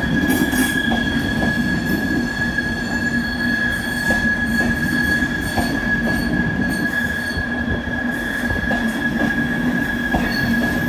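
A train running, heard as a steady high-pitched whine over a continuous low hum and rumble that holds level throughout.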